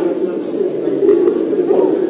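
Chromatic button accordion and acoustic guitar playing live, the accordion holding a steady low note.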